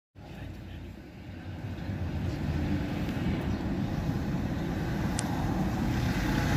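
Low car engine and street traffic rumble heard from inside a car, growing gradually louder, with a brief high chirp about five seconds in.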